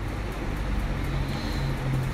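Steady cooking noise as brinjal masala is stirred in an aluminium pressure cooker over a gas burner: a low even hum under a faint sizzle, with no distinct knocks.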